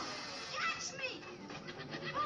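Cartoon monkeys screeching and chattering, with a few quick rising-and-falling cries near the middle.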